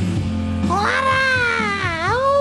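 Background music, with two long pitched tones over it, each rising and then falling in pitch, the first starting under a second in and the second at the very end.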